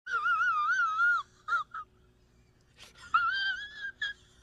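A man's high, quavering falsetto wail held for about a second, followed by two short squeaks, then a second high wail, slightly rising, near the end.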